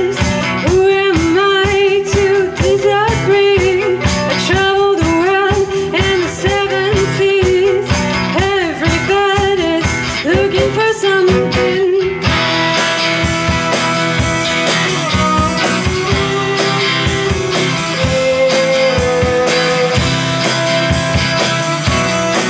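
Live acoustic band music: acoustic guitar and violin playing a song, with a wavering, bending melody line over them. About twelve seconds in the texture changes, the bass dropping away and the upper range filling out, with some long held notes.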